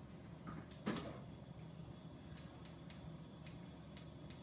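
Faint handling noises at a kitchen stove: a single sharp knock about a second in, then a string of light clicks in the second half.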